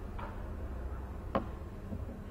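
A faint click just after the start and a sharper single click about two-thirds of the way through, over a steady low room hum.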